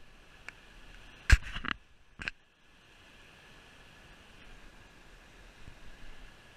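A sharp knock a little over a second in and a smaller click about two seconds in, over a faint steady hiss.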